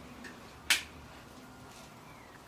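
A single sharp click of a fork striking a plate, about two-thirds of a second in.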